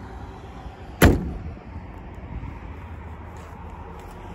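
The hood of a 2022 Lincoln Nautilus slammed shut once, about a second in, a single loud thud over a steady low hum of outdoor background noise.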